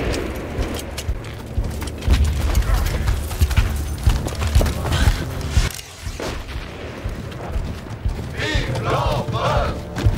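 Battle gunfire: scattered flintlock musket and rifle shots mixed with heavy booms and a low rumble. Men start shouting about eight and a half seconds in.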